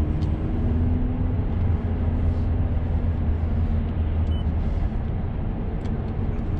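Interior sound of a 2009 Mazda 3 SP25 on the move, a steady low rumble of engine and road noise, with a faint engine tone dropping slightly in pitch in the first couple of seconds.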